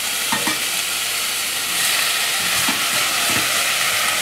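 Onion and garlic frying in olive oil in a stainless steel saucepan, a steady sizzle, as cooked pumpkin cubes are stirred in with a spoon; a few faint knocks of the spoon in the pan.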